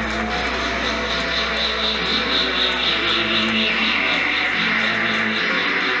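Live post-punk band playing a droning passage on amplified electric guitar, with a steady low hum underneath that drops away near the end, and a pulsing high tone running through it.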